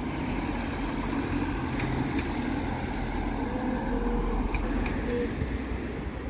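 Road traffic: motor vehicles driving past, a steady rumble of engines and tyres that swells slightly in the middle.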